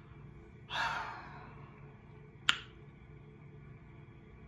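A man's breathy exhale or sigh swelling up about a second in and fading away, then a single sharp click, like a finger snap, about a second and a half later.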